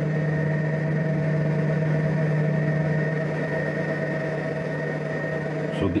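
Steady low hum from the amplifier test setup running at full output into a 2-ohm load. It cuts off suddenly near the end as the amplifier shuts down, unstable at 130 volts peak to peak.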